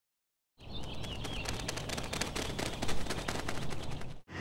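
Wild birds in a colony: a dense run of rapid clicks and chatter, with a short warbling call about a second in.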